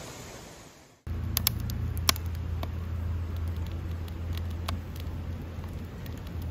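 Wood campfire crackling in a steel fire ring: sharp pops and snaps every second or so, over a steady low hum. Before that, about a second in, the outdoor background fades almost to silence.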